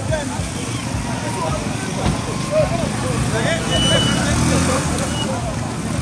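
Several voices talking and calling out at once over steady road-traffic noise, with vehicle engines running close by.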